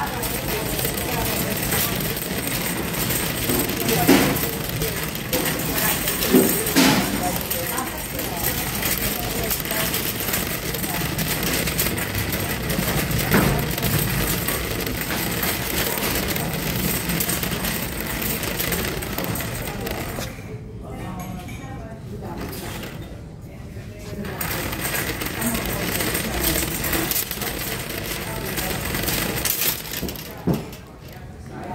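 Wire shopping cart rattling steadily as it is pushed along a hard store floor, with a few sharper knocks; it goes quieter for a few seconds about two-thirds of the way through.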